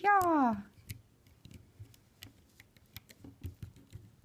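Faint, irregular small clicks and ticks of a plastic hook catching and lifting rubber bands off the plastic pegs of a Rainbow Loom.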